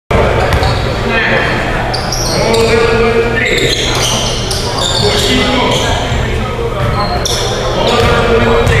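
Basketball game on a hardwood gym floor: the ball bouncing, sneakers squeaking in short high-pitched chirps, and players' voices, all echoing in a large hall.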